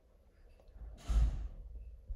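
A single breathy exhale like a sigh, close enough to the microphone to puff on it, about a second in and lasting about half a second.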